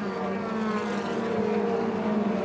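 Formula Ford single-seater racing car's engine running hard at high revs as the car goes by. Its note is steady and drifts slightly down in pitch.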